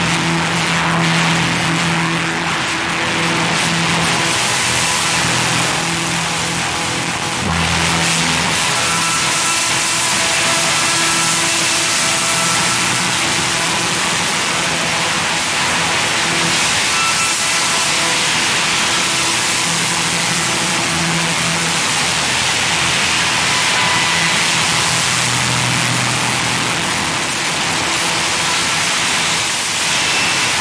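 Electronic noise music: a loud, dense hiss over steady low droning tones that break off and return, with faint higher tones flickering in and out. The texture shifts about seven and a half seconds in.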